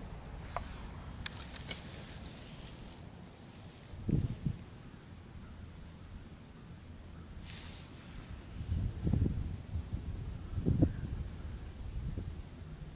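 Low rumble of wind on the microphone outdoors, with a few soft low thumps about four seconds in and again around nine to eleven seconds, and light clicks in the first two seconds.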